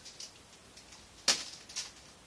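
A small seed packet being taken out of a metal tin and handled: one sharp click just over a second in, then a couple of fainter ones.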